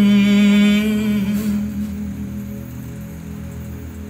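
A voice singing one long held note with a slight waver, strong at first and fading away about a second and a half in, leaving a softer background.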